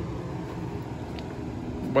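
Steady low rumble of a large truck's engine labouring up a hill some way off.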